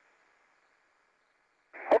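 Air-to-ground radio loop between calls: a faint static hiss fades out within the first second, leaving near silence. A radio voice breaks in near the end.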